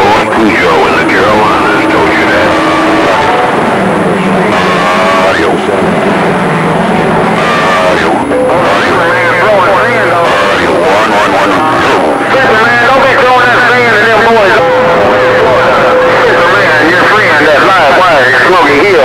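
CB radio receiving skip: several distorted voices talk over one another through steady static, with steady heterodyne whistles at different pitches coming and going.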